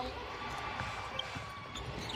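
A basketball dribbled on a hardwood court over low, steady arena background noise.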